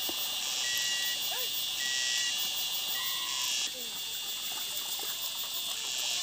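A loud, high-pitched insect chorus buzzing in dense forest, with a short steady whistle-like tone repeating about once a second. About halfway through, the loudest part of the buzzing cuts off. Faint splashing of water as clothes are washed in a plastic basin lies underneath.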